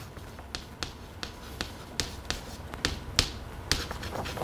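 Chalk writing on a chalkboard: a string of sharp, irregular taps and clicks as the chalk strikes the board with each stroke, about three a second.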